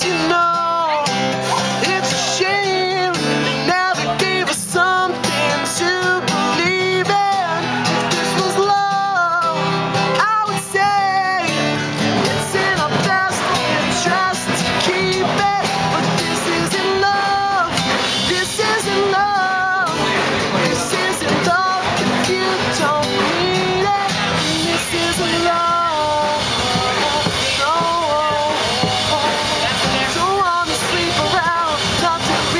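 A man singing to his own strummed acoustic guitar, a solo unplugged performance, the voice coming in phrases over steady chords.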